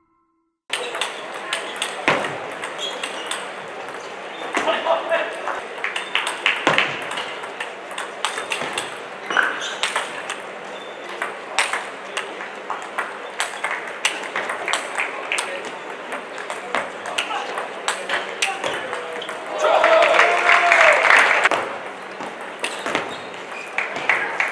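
Table tennis rallies: the plastic ball clicks off rackets and the table in quick exchanges. A loud shout lasting about two seconds comes near the end.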